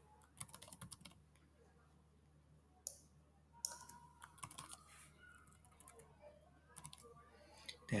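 Computer keyboard typing in short bursts of quick keystrokes, with a couple of sharper single clicks in the middle, over a faint steady low hum.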